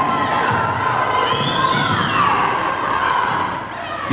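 A group of boys shouting and cheering together during a game: a steady din of many overlapping voices that eases slightly near the end.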